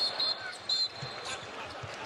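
Basketball being dribbled on a hardwood court, with a thin high squeak through the first second or so, over steady arena background noise.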